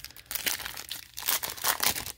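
Foil trading-card pack wrapper being torn open by hand, crinkling with a quick run of sharp crackles.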